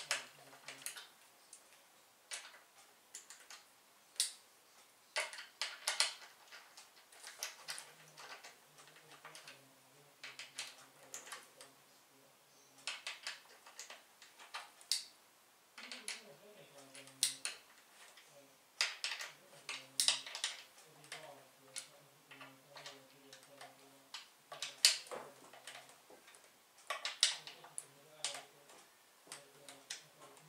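Hands picking at and handling a new vacuum cleaner's plastic tube and its packaging: irregular clicks, ticks and crinkles, with a few sharper snaps.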